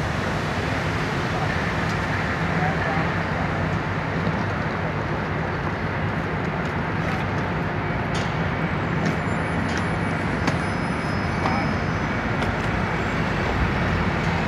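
Steady city street traffic noise with a low, even engine hum running underneath.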